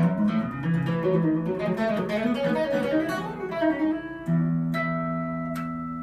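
Electric guitar played: a chord rings, then a run of single notes moves up and down, and about four seconds in a new chord is struck and left ringing.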